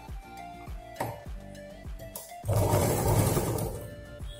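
Black straight-stitch sewing machine running for about a second and a half, starting about halfway through and stopping just before the end, as it stitches a fabric strip. Background music with a steady beat plays throughout.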